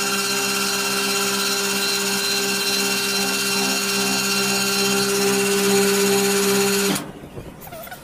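Electric winch (drum) motor of a small goods lift running with a steady hum and whine, cutting off suddenly about seven seconds in.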